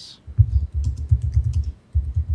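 Fast typing on a computer keyboard: an uneven run of keystrokes, dull thumps under light clicks, starting about half a second in with a short pause near the end.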